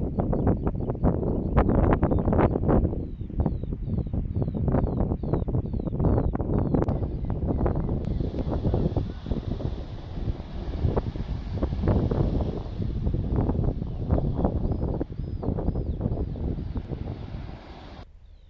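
Wind buffeting the microphone in uneven gusts, a heavy low rumble that eases off just before the end. Faint, quick high chirps repeat through the first half and again near the end.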